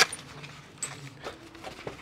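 A sharp click at the start, then faint light clicks and rustling as small metal crimper jaws are handled and tucked into a storage pouch.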